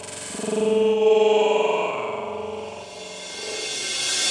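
Electronic dance track in a breakdown: the kick drum drops out and a held synthesizer chord swells and then fades, with a rising hiss building toward the end.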